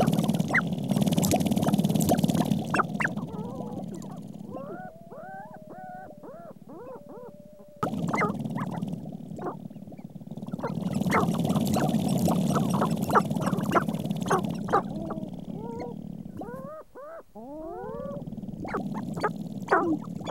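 Sharp-tailed grouse displaying: a dense, fast rattle of stamping feet and tail feathers. Bouts of calls that swoop up and down in pitch come a few seconds in and again near the end, and the rattle picks up again about eight seconds in.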